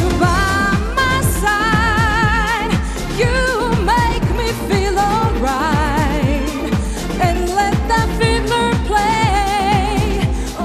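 Pop song: a woman singing with wide vibrato into a microphone over a steady drum beat and backing track.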